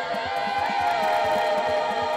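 Experimental noise music from a group of amateur performers playing electronics: layered droning tones, one of them wavering and sliding in pitch, over a quick low pulsing.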